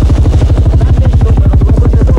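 Helicopter rotor beating loud and steady, a rapid even thudding pulse.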